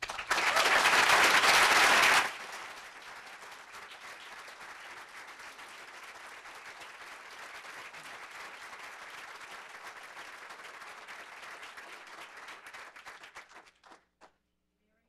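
Audience applause after a speech. It is loudest for about the first two seconds, then settles into steadier, softer clapping that stops just before the end.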